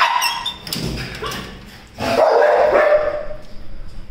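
A German Shepherd's excited yips and whines, with a sudden metallic clatter at the start from the welded-mesh kennel gate, and a louder stretch of the dog's noise about halfway through.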